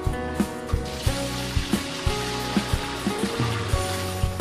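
Background music with a steady beat of about three thumps a second over sustained notes. A hissing wash swells in the middle for about two seconds.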